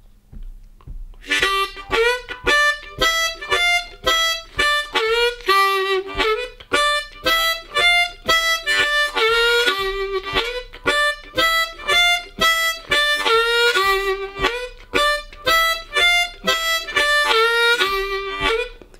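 Hohner Crossover C diatonic harmonica playing a repeating blues riff of short rhythmic notes that moves between the draw-three half-step bend and the draw two, some notes pushed slightly ahead of the beat and held longer. The playing starts about a second in.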